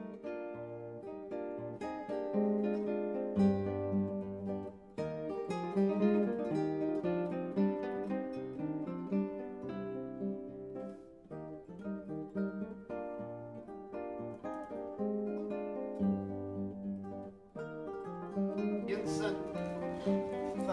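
Background music: an acoustic guitar playing a gentle plucked tune over low bass notes. Near the end a louder, noisier sound comes in over it.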